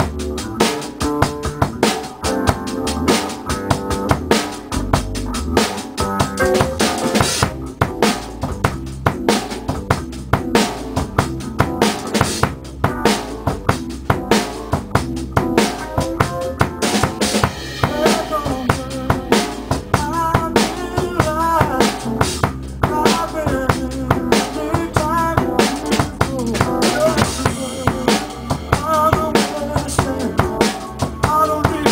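Acoustic drum kit played live in a steady groove, with kick, snare and cymbals, along with a recorded soft-rock song whose keyboards and vocals carry the tune.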